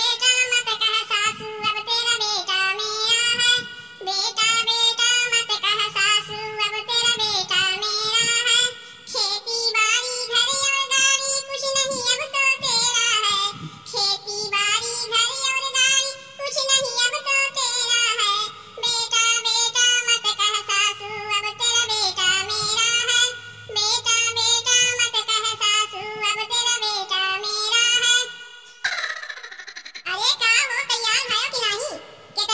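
A woman's cartoon-character voice singing a song in long melodic phrases, very high-pitched, with short breaths between lines; it breaks off about a second before the end.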